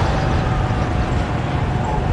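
Steady road noise from riding a motorbike through town traffic: wind rushing over the microphone with a low rumble, plus engine and traffic hum, holding even throughout.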